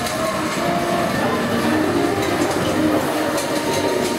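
A suspended dark-ride vehicle rumbling and clattering along its overhead rail, with orchestral music playing along.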